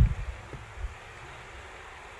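A low thump as a hand handles the wooden box housing a 500 W power inverter, followed by a couple of faint clicks and a steady low background hiss.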